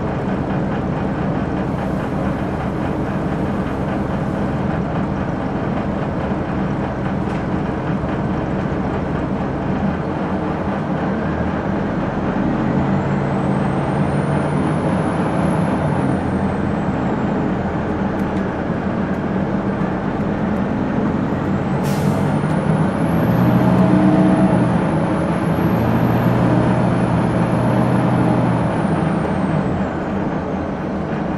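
A 2001 Gillig Phantom bus's Detroit Diesel Series 50 engine running steadily, then pulling harder in the second half, with a high thin whine that rises and falls twice. About two-thirds of the way through there is a brief sharp sound.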